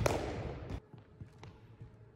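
A basketball hitting a hardwood gym floor: one loud bounce at the start that rings on in the gym's echo, then a few faint thumps of the ball as it is handled.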